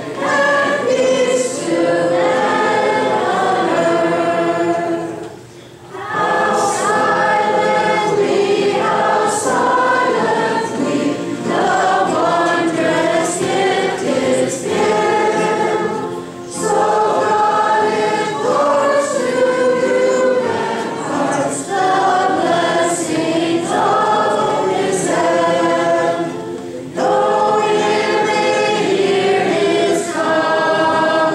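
A small group of girls singing a Christmas carol together, accompanied by two acoustic guitars. The singing comes in long phrases, with brief breaks for breath between lines about every ten seconds.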